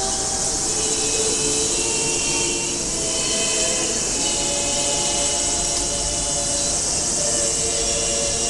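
Women's choir singing in the Bulgarian folk style, holding long sustained chords that shift pitch a few times. A steady high buzz of cicadas runs underneath.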